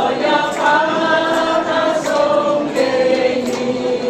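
A small group of men and women singing a Chinese song together in unison, holding long notes, with ukuleles strummed along.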